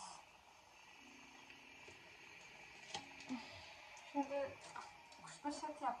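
Quiet room tone with a couple of faint clicks about three seconds in, then a woman's voice in short bits near the end.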